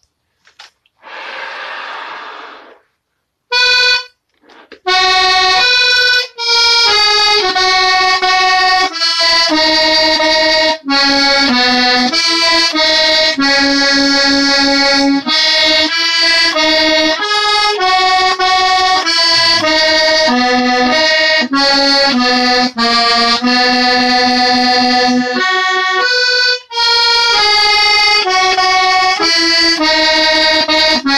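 A Hohner button accordion plays a traditional-style tune of melody notes over held chords from about five seconds in, with a short break near the end. It is preceded by a short hiss.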